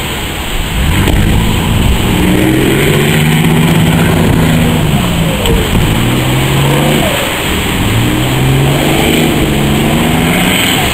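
A small boat's engine revving as the boat crosses a surf bar through breaking waves, its pitch rising and falling several times as the throttle is worked over the swell. Under it, a steady rush of surf and wind.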